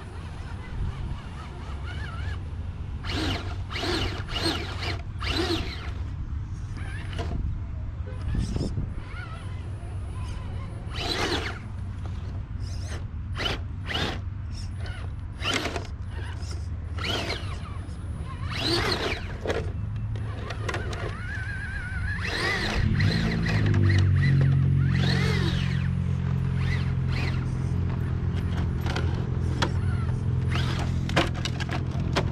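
RC scale rock crawler's electric motor and geared drivetrain whining in short bursts, with clicks and scrapes as the tires grip and slip on rock during a climb. About two-thirds of the way through, a steady low drone with several tones rises in and holds, louder than the crawler.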